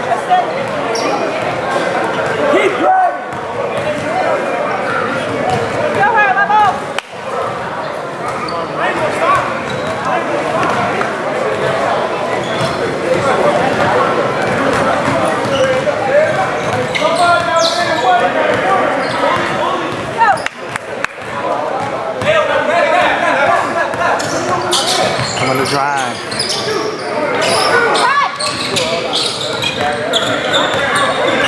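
Basketball dribbled on a hardwood gym floor during play, with voices of players and onlookers echoing around a large gymnasium.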